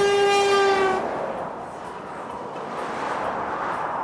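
A passing lorry's air horn sounding one long steady blast that cuts off about a second in, honked in support of the waving protester. Motorway traffic noise runs on after it.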